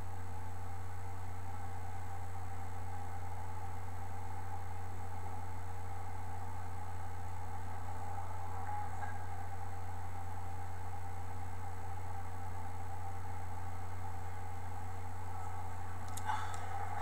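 Steady low electrical hum with faint hiss, unchanging throughout, with no distinct sound event.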